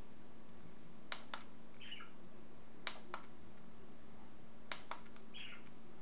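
Plastic button clicks of a handheld remote control, each press a quick double click, repeated four times about two seconds apart, with two short chirps in between, over a steady low hum.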